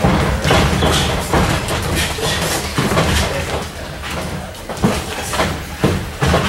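Boxing sparring in a ring: an irregular string of thuds from gloved punches and the boxers' feet on the canvas, with a steady low hum underneath.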